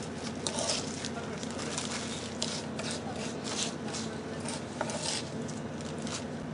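Gravelly box-core sediment being scooped and pushed into a plastic sample bag: irregular short scrapes of grit and crinkles of plastic, several to a second. Under them runs a steady low hum from the ship's machinery.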